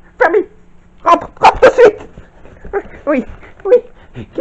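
A series of short, high yelps, about eight in four seconds, several of them in quick succession in the middle.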